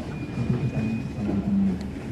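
A man speaking into a handheld microphone in short phrases over a low steady background rumble, with a faint thin high tone in the first moments.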